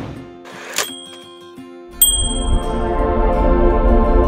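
Channel intro jingle: a whoosh dies away, a bright chime sounds a little under a second in, then a louder ding at about two seconds opens a steady, sustained organ-like music bed.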